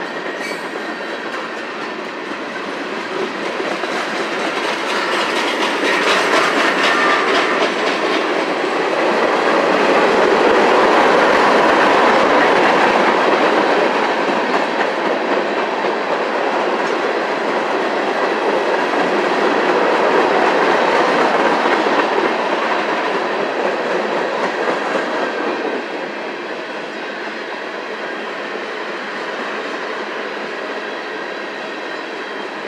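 Freight train cars (boxcars, then tank cars) rolling past close by, a steady roar of steel wheels on rail. It builds over the first several seconds and is loudest near the middle, then drops back noticeably near the end.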